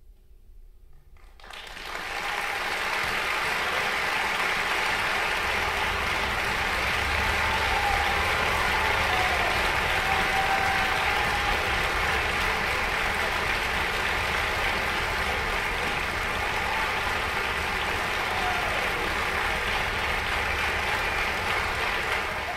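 A concert hall audience applauding: a brief hush, then steady applause breaking out about a second and a half in and holding at full strength.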